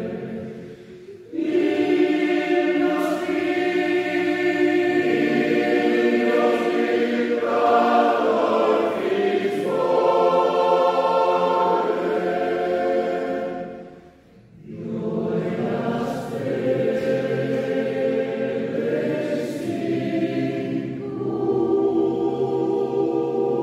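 A choir singing sustained chords in a church. The singing dips about a second in, breaks off briefly about two thirds of the way through, then starts again.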